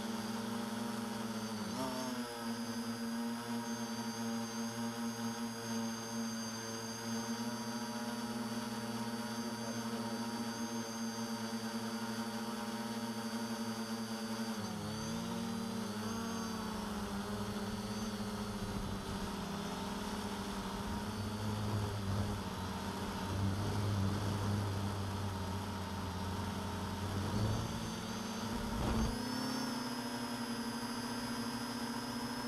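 A DJI F450-clone quadcopter's four 1100 kV brushless motors and 9x5 carbon propellers run with a steady pitched hum. The pitch dips and shifts as motor speed changes, about two seconds in, again around halfway, and once more near the end.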